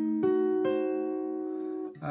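Acoustic guitar: a diminished chord picked one string at a time from low to high, the last notes entering about a fifth of a second and two-thirds of a second in, then ringing together and slowly fading.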